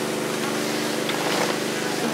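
A motor running steadily, a drone of several fixed tones with an even hiss behind it.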